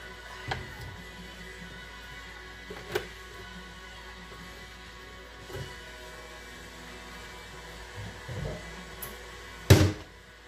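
Background music playing steadily, with a few light knocks of kitchenware on the counter and one louder thunk near the end as the vegetable oil bottle or measuring cup is set down.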